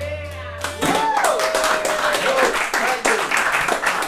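The final notes of a folk tune on whistle, plucked bowl-backed string instrument and tabla ring out and die away. About a second in, a small audience starts clapping, with a long cheer.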